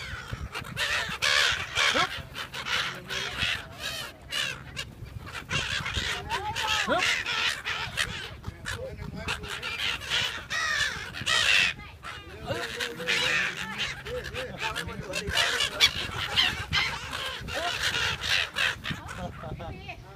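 A flock of gulls calling over the water: many short, harsh cries overlapping without a break, with people's voices in the background.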